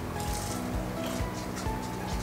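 Soft background music with steady sustained notes, under a person chewing a mouthful of fried chicken.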